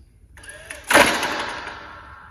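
Champion WheelyBird 2.0 clay thrower dry-fired with no target: the spring-loaded throwing arm is released and swings through with one loud metallic clank about a second in, followed by a ringing that slowly fades.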